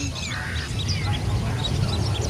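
Background sound of a crowded open-air meeting: a steady low rumble with faint, scattered indistinct sounds and a brief noisy burst about half a second in.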